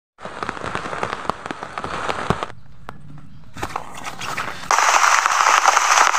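Rain falling on plastic tarp sheeting, many sharp drop taps over a rain hiss, with abrupt cuts between shots. Near the end it turns to a louder, denser, steady downpour hiss.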